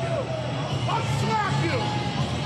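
Voices yelling and shouting, with rock entrance music faint beneath them.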